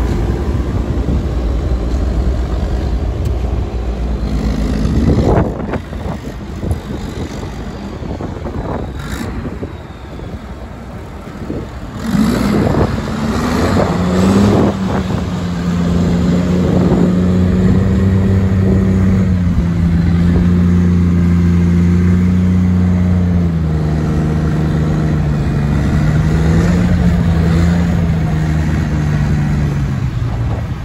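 Diesel tractor engines at a silage clamp: a low rumble, then revving up in rising bursts about five seconds in and again around twelve to fifteen seconds. After that a Massey Ferguson tractor's engine holds steady high revs, its pitch dipping slightly now and then, as its trailer tips up near the end.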